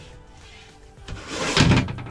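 Poly-plastic cabinet door swung shut and snapping into its marine latch, one loud shut about a second and a half in, over background music.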